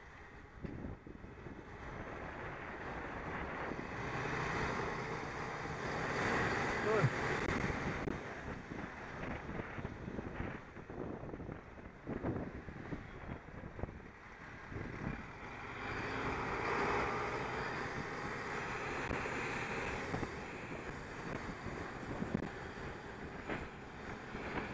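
Wind rushing over a bicycle-mounted camera's microphone while riding in traffic, mixed with the running engine of a bus ahead and nearby cars. The rush swells and fades a couple of times.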